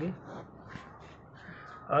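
A faint bird call in the background, heard during a short pause in speech.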